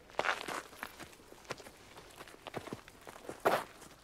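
Footsteps of someone walking through a cave: a handful of irregular steps, the loudest about three and a half seconds in.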